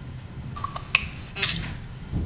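A few faint clicks and rustles about halfway through, over a low steady room hum: phone handling noise as the phone on the video call is moved around.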